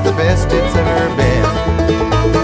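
Bluegrass string band playing an instrumental passage: quickly picked banjo and guitar notes over a steady bass line.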